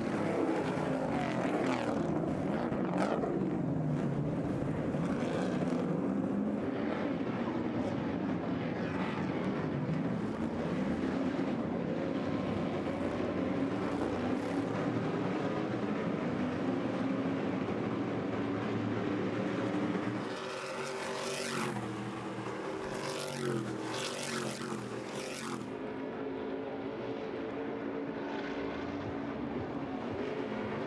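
Stadium Super Trucks' V8 engines racing as a pack: several engines at once, their notes rising and falling as the trucks accelerate, lift and pass through the corners. About twenty seconds in the sound drops slightly and settles into steadier engine notes.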